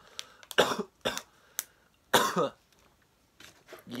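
A person coughing several times from marijuana smoke: harsh coughs in the first half, trailing off into softer ones near the end.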